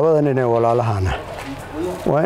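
A man's voice holding one long drawn-out vowel for about a second, dipping slightly in pitch, a hesitation sound between words, then a short pause.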